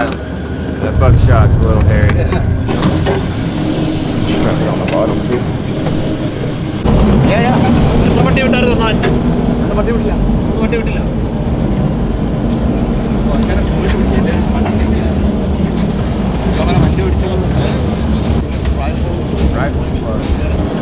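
Engine of an open-sided ranch vehicle running as it drives along, with a steady low rumble that gets louder about seven seconds in.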